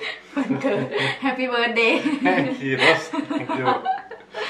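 A woman and a man laughing and chuckling together, mixed with a little talk.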